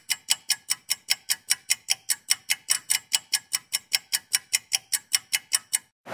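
Rapid, evenly spaced electronic clicks like a metronome, about five a second, with no chord tones heard.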